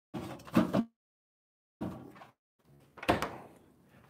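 Refrigerator door being opened and shut while drinks are put inside: three short bursts of knocking and rattling with dead silence between them.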